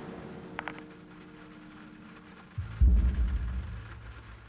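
A low droning hum with a few held tones, then a sudden deep rumbling boom about two and a half seconds in that slowly fades.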